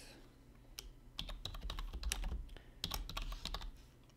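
Computer keyboard being typed on: irregular key clicks in short runs, starting about a second in.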